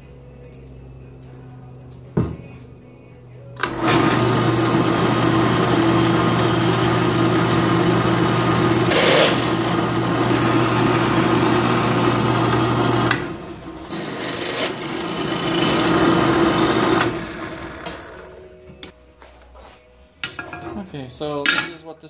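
Drill press motor running with a low hum, then its twist bit drilling through steel angle iron: a loud, steady cutting noise for about nine seconds, a short break, and a second shorter stretch that fades as the bit comes out. A few light metal knocks follow near the end as the piece is moved.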